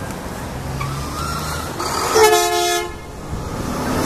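A horn sounds one short blast, about half a second long, a little after two seconds in, over steady road traffic noise.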